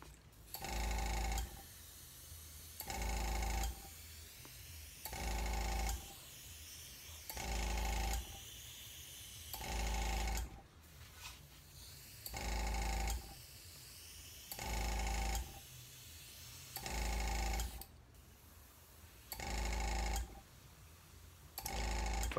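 Small airbrush air compressor's motor cutting in for under a second about every two seconds, about ten times in a row, with a low hum each time. Between the bursts there is a steady high hiss of air from the dual-action airbrush as it sprays.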